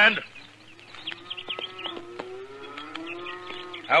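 Radio-drama sound effect of a herd of cattle lowing: several long, overlapping moos that slide slowly in pitch, with a few sharp clicks among them.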